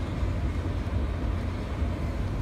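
Steady low rumble with a faint hiss inside the cab of a pickup truck, with no breaks or distinct events.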